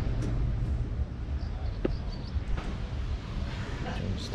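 Low, uneven rumble of wind and handling on a handheld camera's microphone while walking outdoors. A brief faint rising tone comes about two seconds in.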